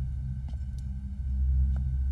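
Background score: a low, steady drone with a few faint clicks over it.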